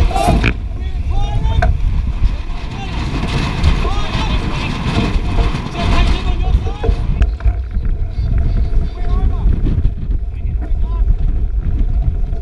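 Strong wind buffeting the microphone of a camera mounted on a heeled Young 88 keelboat, with water rushing along the hull; crew voices call out now and then in the first half.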